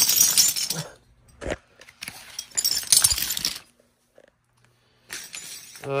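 A white foam covering sheet being handled and pulled back, in three crinkling, rustling bursts with a short thump between the first two.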